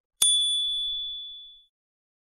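A single bright ding: a notification-bell chime sound effect struck once about a quarter second in, its clear high tone ringing and fading away over about a second and a half, marking the bell icon being clicked on an animated subscribe button.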